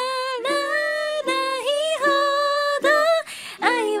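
Female voice singing a slow, held melody over a strummed ukulele, with a quick breath between phrases about three seconds in.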